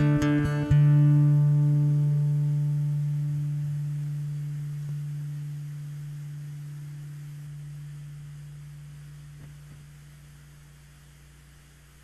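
Acoustic guitar ending a song: a few quick strums, then a final chord under a second in that rings on and slowly dies away.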